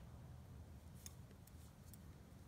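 Near silence: a low room hum, with a few faint clicks of metal double-pointed knitting needles touching as stitches are knitted, from about a second in.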